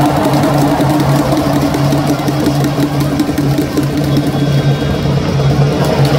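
Baseball stadium crowd chanting a cheer song in unison, holding a low steady note with short breaks, over dense crowd noise.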